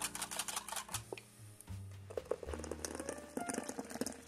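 Wire balloon whisk beating almond milk in a ceramic cup to froth it: rapid clicking of the wires against the cup's sides. The clicking pauses briefly about a second in, then goes on in sparser strokes.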